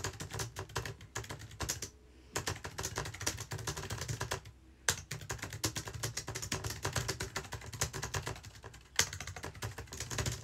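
Fast typing on a computer keyboard, a dense run of key clicks broken by short pauses about two seconds in and again about four and a half seconds in. Two single keystrokes stand out as louder, near the middle and near the end.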